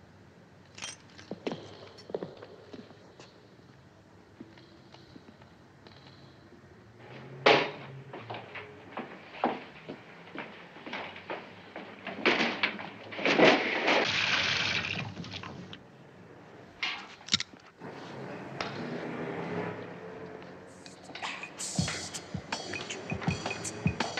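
Film sound effects of movement in a room: scattered knocks and clicks, a sharp bang about seven and a half seconds in, and a burst of rushing noise for a couple of seconds around the middle.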